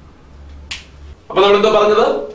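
A single sharp click about two-thirds of a second in, followed by a man starting to speak.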